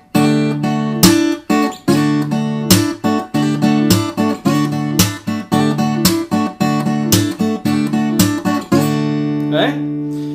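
Takamine steel-string acoustic guitar playing a fingerstyle riff on a D chord: picked bass notes and chord tones, a hammer-on and a slide, with sharp percussive hand slaps on the strings between the notes. The last chord is left ringing near the end.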